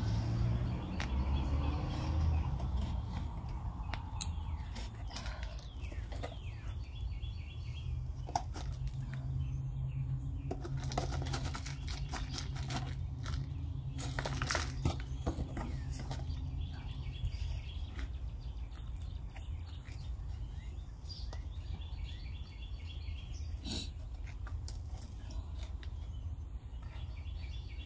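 Small birds chirping over a steady low rumble, with scattered clicks and rustles of plastic jugs and potting soil being handled. The handling noise is busiest in the middle, when soil is poured from one plastic jug into another around the seedling.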